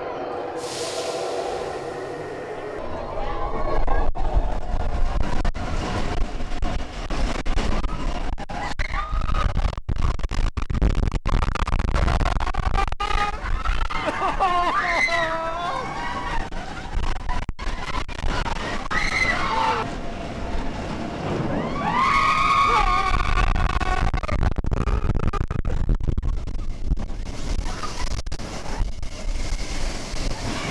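Roller coaster train running on its track, heard from a rider's seat: a steady rumble with wind buffeting the microphone, growing louder about four seconds in. Riders shout and scream several times over it, loudest about halfway through and again about three quarters through.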